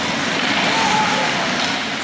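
Ice hockey game ambience in an echoing arena: a steady wash of skates on the ice, with faint distant shouts.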